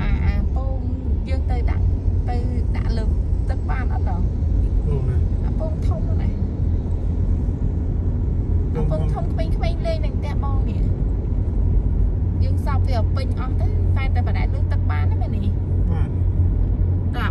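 Steady low rumble of a car driving along a paved road, with people talking on and off over it.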